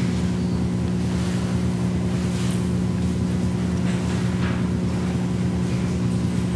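Steady low hum of the room and the microphone system, with a few faint rustles in the pause between speakers.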